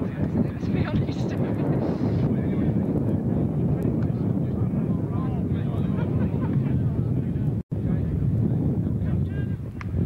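Wind rumbling on a camcorder microphone, with faint voices of players talking in the background. The sound cuts out for an instant about three quarters of the way through, where the recording breaks.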